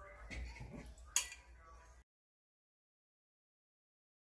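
A metal spoon scraping and tapping in a small glass bowl of blended cucumber-kiwi pulp, with one sharp clink about a second in. The sound cuts off suddenly about two seconds in.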